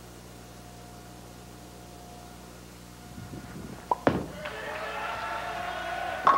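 A ten-pin bowling ball is released and lands on the lane with a sharp thud about four seconds in, then rolls steadily down the lane toward the pins.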